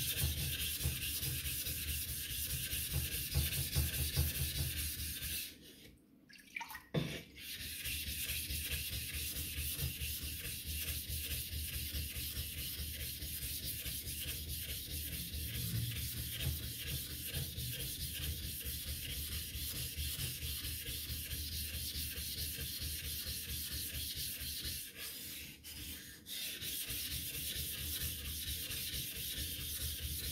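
Flattening plate scrubbed back and forth over a wet Imanishi Bester #1000 waterstone, a steady gritty rubbing, to level a stone whose surface is not flat out of the box. The scrubbing stops briefly twice, about six seconds in and again near the end.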